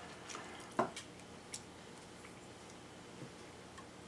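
Small eating sounds: a few soft clicks and mouth noises in the first two seconds, the loudest a little under a second in, over faint room tone.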